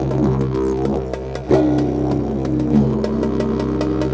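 A didgeridoo droning, its overtones shifting and bending as the player shapes the sound, with a sudden louder accent about a second and a half in. Drums keep a steady beat of sharp, evenly spaced hits underneath.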